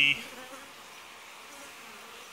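Steady, faint buzzing of a honey bee colony in an opened wall cavity. The bees have been lightly smoked to calm them. The tail end of a spoken word is heard at the very start.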